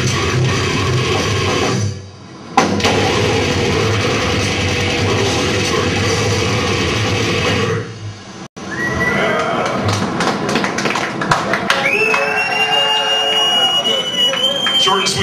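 Death metal band playing live at full volume, with a brief stop about two seconds in and a hard restart, until the song ends about eight seconds in. After the song, a guitar amp holds a steady high feedback whine amid scattered clicks and crowd noise.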